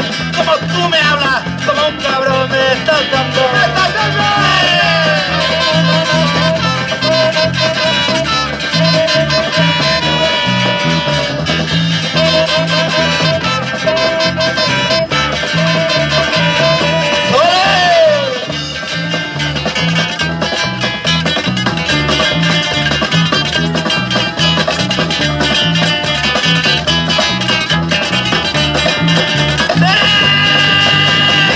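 Live band instrumental break: trumpet and saxophone playing melody lines over strummed acoustic guitars and drums, with a steady bass pulse. Near the middle a horn line slides up and back down.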